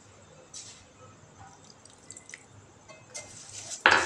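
Faint small ticks, then near the end a metal utensil starts stirring wet, grainy sugar in a pot. It scrapes and clinks against the pot, with one sharp knock just before the end.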